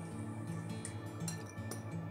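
Background music with a slow line of held low notes, and a few light clicks over it.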